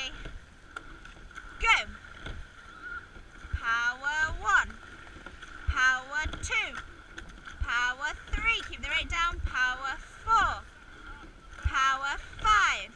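A rowing coxswain shouting short calls about every two seconds, in time with the strokes, as the crew takes ten power strokes. Beneath them are the rush of water along the hull and low knocks from the oars and slides.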